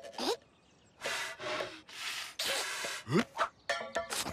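Cartoon raccoon characters making wordless vocal sounds in short breathy bursts, with a rising squeak just after the start and another just after three seconds.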